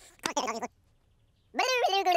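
High-pitched, wordless cartoon character babble. There is a short call about a quarter second in, then a pause, then a longer call that rises in pitch near the end.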